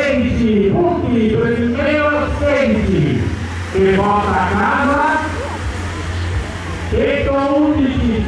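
A man's voice commentating the race, calling out in long, drawn-out tones with sliding pitch, too unclear to make out words, over a steady low hum.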